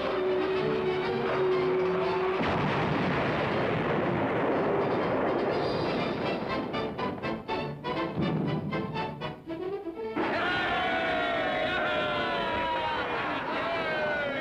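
Cartoon explosion sound effect: a long, loud, noisy blast begins about two seconds in over the background music and breaks up into rapid crackles. Orchestral music with falling sliding notes takes over near the end.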